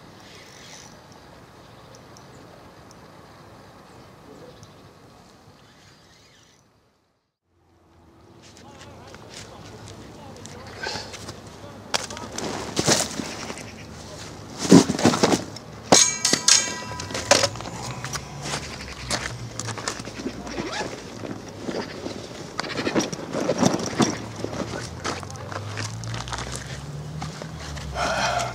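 A zander being landed: a busy run of sharp knocks, clanks and a short rattle as the landing net and its metal handle are handled on the concrete bank, after a quieter stretch near the start that breaks off in a moment of silence.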